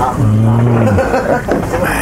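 A man's low hummed 'mmm', held steady for under a second just after a swallow of his drink, over background bar chatter.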